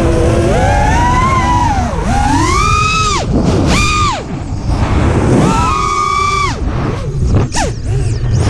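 FPV racing quadcopter's brushless motors whining, the pitch climbing and dropping again and again as the throttle is punched and chopped through flips and dives, with quick swoops a few seconds in and near the end. Under it is a steady low rumble of wind on the onboard camera's microphone.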